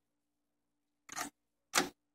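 Mostly dead silence, with one short soft noise a little after a second in, just before a spoken word begins near the end.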